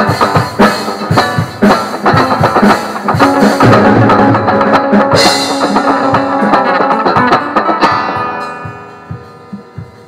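Background music with a steady drum-kit beat, fading out over the last two seconds.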